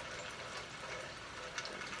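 A pause with no speech, filled by steady outdoor background noise: an even hiss like running water or wind, with no distinct events.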